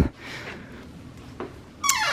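A sharp click of a door handle and latch as an interior door is opened, then quiet room tone.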